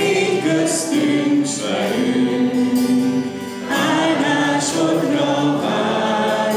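Church congregation singing a hymn together in Hungarian, with slow, long-held notes.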